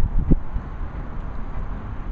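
Wind buffeting an outdoor microphone: an uneven low rumble, with a brief murmur of voice about a third of a second in.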